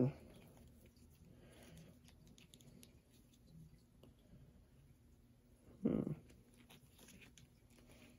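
Faint rustling and small clicks of a plastic action figure and its stiff rubber jacket being handled.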